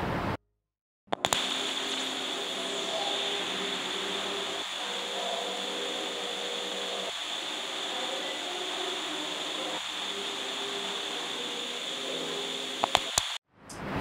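A steady hum and hiss, like room or appliance noise, with a few faint clicks. It is cut by a second of dead silence near the start and again near the end.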